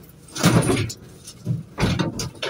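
Scrap metal frames clattering and scraping against each other and the van's load floor as they are pushed in. There is one longer burst about half a second in and a sharper knock near the end.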